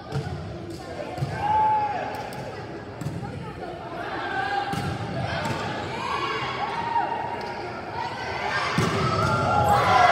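Indoor volleyball rally in a reverberant gym: the ball struck with sharp thuds, sneakers squeaking on the hardwood floor, and spectators chattering. The crowd noise swells to a cheer near the end as the point is won.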